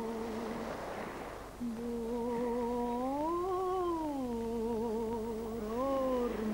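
A lone voice singing a slow, wordless melody in long held notes with vibrato. It breaks off briefly about a second in, then climbs slowly and falls back in pitch midway.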